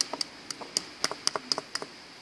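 A small plastic spoon scooping and tapping dirt against a plastic sand bucket, making a quick, irregular string of light taps and clicks.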